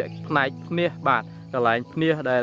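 A man talking in short phrases over steady background music.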